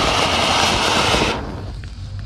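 Anar (ground fountain firework) spraying sparks with a loud, steady hissing rush. The rush dies down about one and a half seconds in as the fountain burns out.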